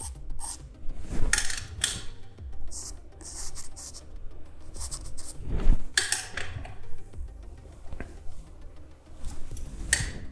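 Pencil drawing on paper: irregular scratchy strokes of the lead across the sheet, the longest runs about a second and a half in and again about six seconds in.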